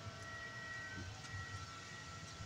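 Quiet, steady room tone: a faint low hum with a few thin, high, steady tones and no distinct events.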